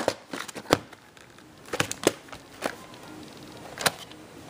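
A plastic VHS clamshell case being handled and opened on a wooden floor: a few sharp plastic clicks and knocks spread over the seconds, the loudest near the end.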